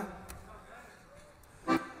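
Faint accordion notes, held softly in a lull between spoken remarks.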